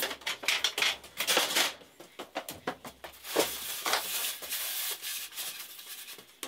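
Large 4×8 wooden sheets being handled on a stack: rough scraping and rubbing as a sheet slides, broken up by sharp knocks and clatters of wood on wood.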